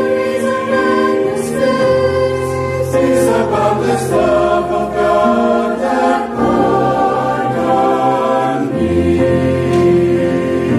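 Mixed choir of men's and women's voices singing a hymn in parts, holding sustained chords that change every second or two.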